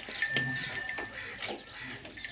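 A farm animal calling twice in short calls, over a faint steady high-pitched tone.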